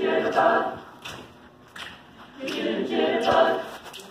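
A choir singing unaccompanied: two held chords a couple of seconds apart, with light sharp ticks marking the beat about every two-thirds of a second.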